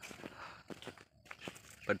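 Footsteps on dry forest floor: a few faint, irregular steps, with a short lull about a second in.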